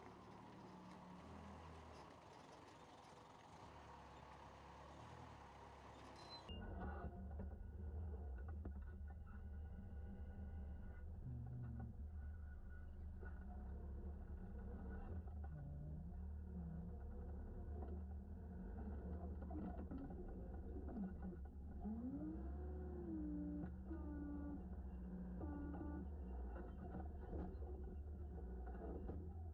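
Forklift engine running with a steady low drone. About six seconds in the sound changes abruptly to a much closer, heavier engine drone, with a few short rising and falling whines near the end.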